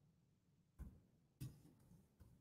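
Near silence broken by two faint clicks about half a second apart, computer keyboard keys being typed.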